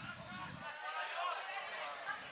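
Several voices calling and shouting across a football pitch, overlapping, with no single clear speaker.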